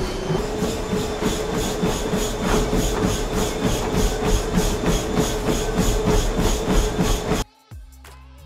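Fast running footfalls on a treadmill belt, an even beat of about three to four steps a second, over the steady whine of the treadmill motor. The whine steps up slightly in pitch about half a second in as the belt speeds up for a sprint. The sound cuts off suddenly near the end.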